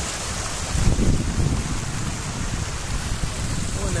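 Water rushing and splashing down over rocks in a small spring-fed cascade: a steady rushing noise with a heavy low rumble, a little louder about a second in.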